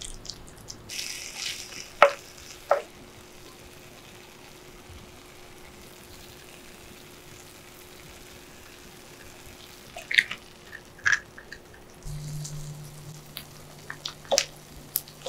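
Kikiam sisig sizzling faintly on a hot sizzling plate. A spatula stirs it early on and strikes the plate twice about two seconds in. A few sharp clicks and knocks follow around ten seconds and near the end.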